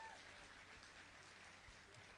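Near silence: faint, even background hiss.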